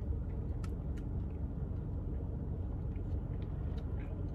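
Steady low rumble of a car, heard from inside its cabin, with a few faint ticks over it.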